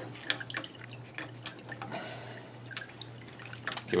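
Irregular small clicks and taps of cable connectors being handled and fitted onto an RCA-10 ultrasonic corrosion scanner, over a steady low hum.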